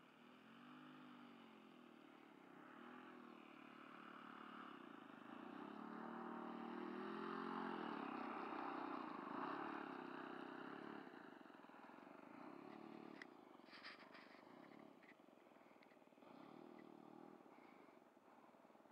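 Four-stroke model airplane engine of a Stick RC plane idling and blipping its throttle as the plane taxis in on the grass, its pitch rising and falling, growing louder as it comes near and then fading. A few short clicks past the middle.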